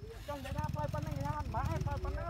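Small motorcycle engine running at low speed, a steady low rumble, under people talking.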